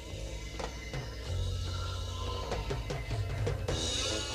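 Dramatic orchestral-style background score with drum hits struck at irregular intervals over a steady low drone.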